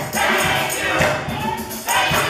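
Gospel choir singing in full voice with keyboard accompaniment, over a steady rhythmic beat.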